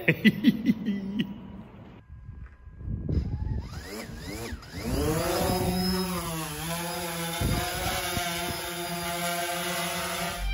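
DJI Phantom 4 quadcopter's propellers spinning up from about three seconds in with rising whines, then a steady multi-tone hum as it hovers. The pitch dips briefly and recovers partway through as the motors adjust.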